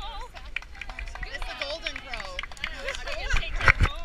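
Nearby people talking, indistinct, while hands pat a golden retriever and rub against the action camera strapped to it. The handling gives loud rustling knocks near the end.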